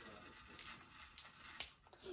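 Faint, scattered light clicks of small plastic game pieces and toys handled on a table, three or four in all, over a quiet room.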